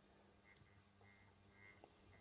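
Near silence, with a faint, intermittent buzz from the model locomotive's tender-mounted three-pole motor as it kicks in roughly at very slow speed.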